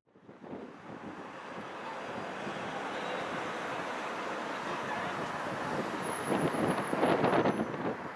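Road noise of a car driving through town streets: a steady rush of tyres and wind, swelling briefly near the end.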